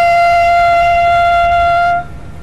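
A loud horn blast held steady on one high note, stopping abruptly at the end.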